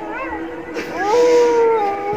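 A long wolf-like howl, one held note sliding slightly down in pitch, starting about a second in, over a steady background tone.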